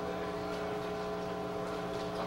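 Steady hum made of several held tones over faint room noise.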